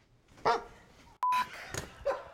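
A short, sharp bark-like cry, then a click and a brief steady beep tone, then another short cry.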